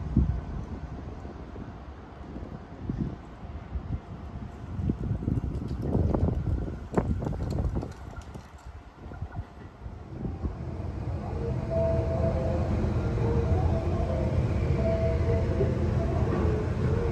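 Wind buffeting the microphone in gusts beside a railway line. From about ten seconds in, a louder, steadier rumble with a faint hum builds as a train runs nearby.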